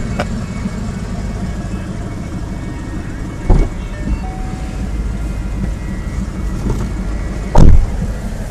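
Steady low rumble, broken by a thump about three and a half seconds in and a much louder thump near the end: the driver's door of a Mustang coupe being shut from inside.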